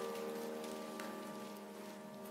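A church organ holding a sustained final chord, slowly fading: the close of the hymn music.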